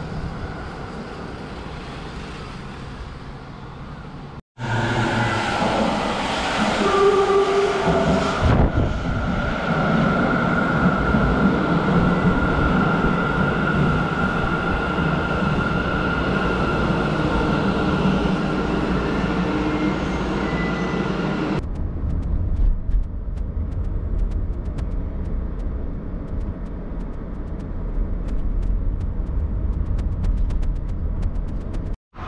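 Sendai Subway Tozai Line train moving along the platform: a steady electric whine over the rumble of the running train. About three-quarters of the way through it cuts to low road rumble inside a moving car.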